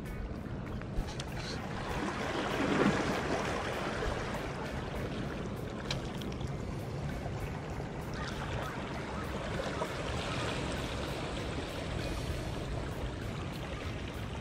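Sea water washing against jetty rocks, swelling for a moment about two to three seconds in, with background music over it.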